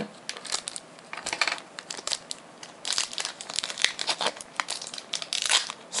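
Foil booster-pack wrapper crinkling as it is handled, in irregular crackles that grow denser about halfway through and again near the end.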